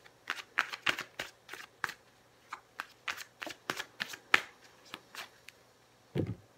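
A deck of large tarot-style cards shuffled by hand, the cards clicking and slapping together in irregular runs. The clicks come quickly for the first couple of seconds, then more sparsely, and stop shortly before the end.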